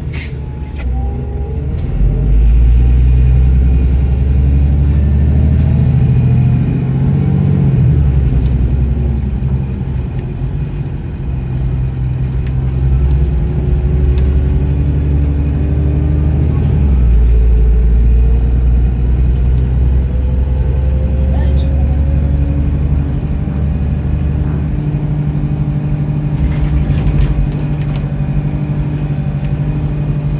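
Double-decker bus engine heard from inside the lower deck, running under load as the bus drives and accelerates. The low engine note shifts at gear changes, and a faint rising whine comes through as it picks up speed.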